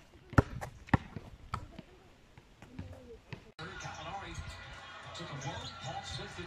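A basketball being dribbled on an outdoor asphalt court: sharp bounces about twice a second, growing fainter. About three and a half seconds in, the sound cuts abruptly to the sound of a televised NBA game, with steady arena crowd noise.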